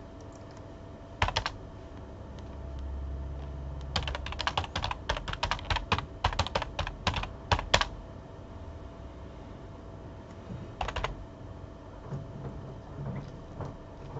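Typing on a computer keyboard in short bursts: a couple of keystrokes about a second in, a quick run of keystrokes from about four to eight seconds in, and a few more near eleven seconds.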